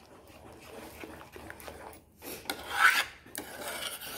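Metal spoon stirring and scraping thick kheer in a metal pan, loudest about three seconds in.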